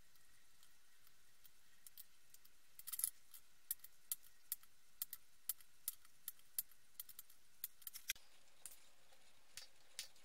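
Faint, sharp metallic clicks, about two a second for several seconds, from hand work on a circuit board bristling with resistor leads being soldered.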